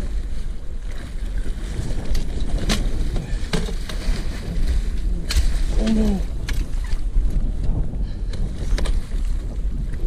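Wind rumbling on the microphone, with a big musky thrashing and splashing at the side of the boat as the net goes under it; several sharp splashes stand out. A short falling voiced exclamation comes about six seconds in.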